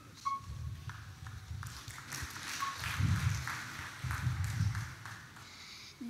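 Handling noise from a handheld microphone as it changes hands: irregular low thumps and rustling, with a few light clicks and a brief faint tone near the start.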